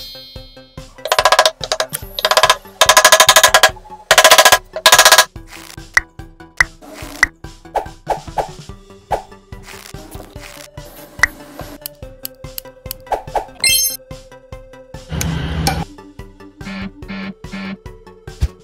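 Nylon cable ties being pulled tight, a rapid ratcheting zip heard three times in the first few seconds and again later, over background music.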